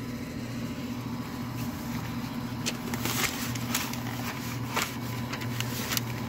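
Gloved hands handling a smoked brisket on butcher paper: several short paper rustles and crackles from a couple of seconds in, over a steady low hum.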